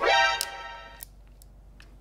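An edited-in musical sound effect: a quick upward sweep into a bright, many-toned ring that fades away over about a second. It carries two light clicks, about half a second and one second in.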